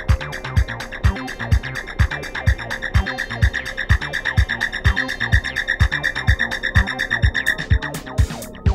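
Electronic dance track: a steady drum-machine kick about twice a second under ticking hi-hats, with a pulsing high synth tone that grows louder and cuts off shortly before the end.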